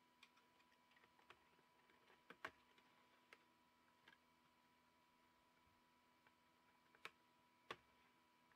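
Faint, scattered plastic clicks and taps as a laptop keyboard is pried loose with a thin card, the sharpest about two and a half seconds in and two more near the end, over a faint steady tone.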